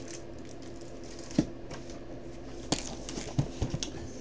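Light knocks and clicks of cardboard boxes being handled and set down: one sharp tap about a second and a half in, then a cluster of small knocks near the end, over a steady low hum.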